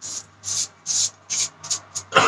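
Safety razor with a Treet blade scraping through lathered stubble around the upper lip in short strokes, about three a second.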